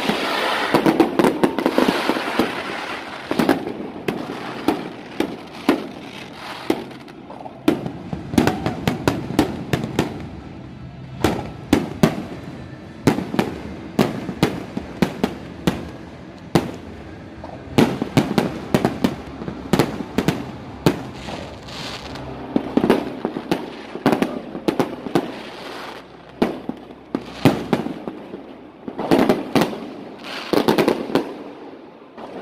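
Fireworks display: an irregular string of bangs from bursting aerial shells over a continuous crackle, busiest at the start and again near the end.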